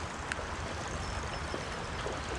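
Steady rush of a shallow river's current running over a rocky riffle, with a low rumble of wind on the microphone.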